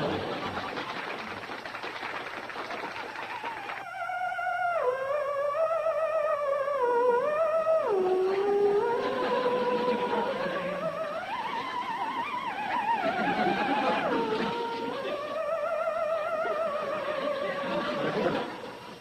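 Theremin playing a slow melody: a single wavering tone that glides smoothly from note to note. It comes in about four seconds in, after a stretch of steady rushing noise.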